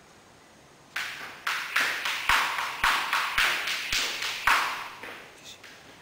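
A run of about eight sharp smacks, roughly two a second, each ringing briefly in the room, then fading out near the end.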